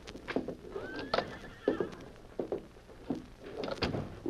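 Radio-drama sound effects of a horse pulled up and standing: irregular hoof clops and a short whinny about a second in, with a sharper knock near the end.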